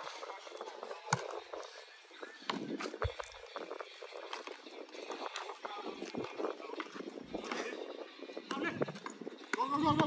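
A basketball bouncing hard on brick paving as it is dribbled, with irregular knocks and the scuff of sneaker steps, and voices in the background.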